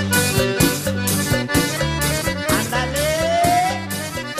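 Instrumental outro of a Mexican regional band song: an accordion melody over bass and a steady drum beat. The level begins to fall near the end as the song fades out.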